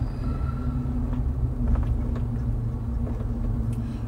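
Steady low road and engine rumble inside the cabin of a large truck on the move.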